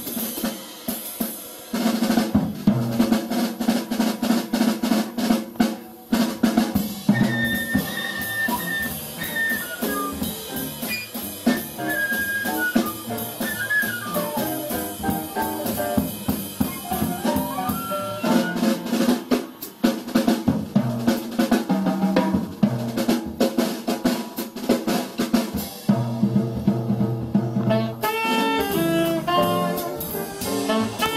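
Live acoustic jazz with the drum kit most prominent, busy snare, cymbal and bass-drum strokes over upright bass and piano. A higher line slides between notes in the middle, and a saxophone comes in near the end.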